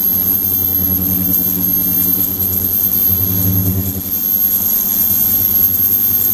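Ultrasonic transducer running in a water-filled resin tank: a steady low hum under hiss and a constant high-pitched whine. The hum weakens about four seconds in.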